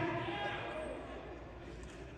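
A man's preaching voice trailing off as its echo dies away in a large hall, fading to low room tone with faint traces of voices.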